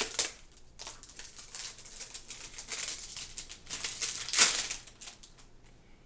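Plastic packaging and a roll of plastic rhinestone bling wrap being opened and handled: irregular crinkling and rattling clicks, with a louder crackle about four and a half seconds in, dying down near the end.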